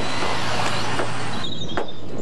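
Construction-site noise: a heavy machine's engine running steadily, with a few sharp knocks and a thin high whine near the end.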